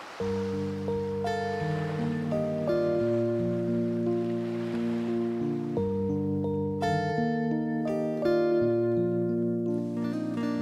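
A small live acoustic worship band playing the instrumental introduction to a song, with acoustic guitar and sustained chords that change every second or two. A brighter, higher melody line joins about seven seconds in.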